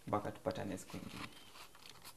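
A man's voice speaking briefly at the start, then quiet studio room tone.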